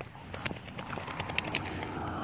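Footsteps through grass, a string of irregular soft clicks and rustles.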